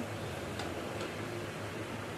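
Water boiling hard in a wok beneath a plate on a steaming rack: a steady bubbling hiss with a couple of faint ticks.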